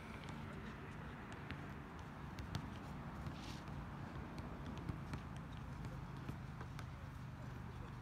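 Outdoor basketball court ambience: a steady background hiss with a few faint, scattered knocks of a basketball bouncing and sneakers stepping on the asphalt court.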